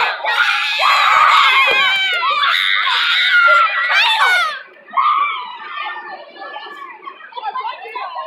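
Children shouting and screaming in high voices, loud for the first four seconds or so, then dropping to quieter chatter.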